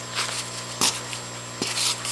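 Plastic shrimp shipping bags (Kordon breather bags) rustling and crinkling as they are handled in a foam-lined box, in three short bursts, the sharpest a little under a second in.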